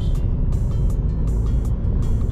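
Car cabin road and engine noise, a steady low rumble while driving, with music playing along.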